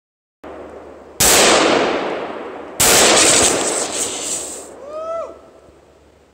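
Two gunshots about a second and a half apart, each hitting a pressurized fire extinguisher and followed by a loud rushing hiss as the extinguisher bursts and vents its powder, the hiss fading over a second or two. A short voice exclamation follows near the end.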